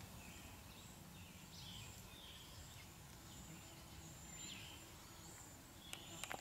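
Quiet outdoor ambience with a few faint, short chirps of distant birds scattered through it, over a thin steady high hiss.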